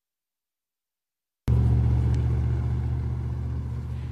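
Steady low rumble of a motor vehicle's engine, cutting in suddenly about a second and a half in after silence and easing off slightly in level.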